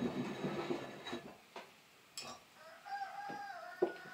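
A few light clinks and knocks of glass oil-lamp parts being handled, with a chicken calling once in the background for about a second in the second half.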